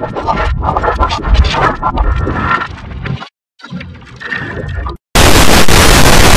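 Heavily distorted, processed effects audio with music in it. It drops out briefly about three seconds in, then a sudden, very loud blast of harsh noise begins about five seconds in.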